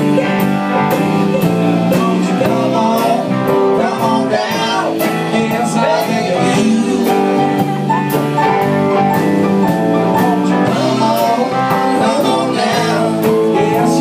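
Live band playing a country-blues song: electric and acoustic guitars over a drum kit keeping a steady beat of about two strokes a second, with singing.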